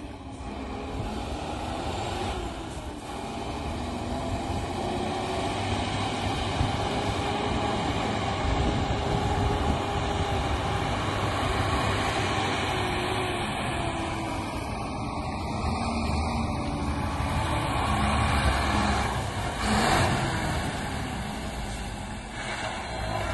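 Sinotruk dump truck's diesel engine running as the loaded truck drives across dirt ground, getting louder as it comes closer.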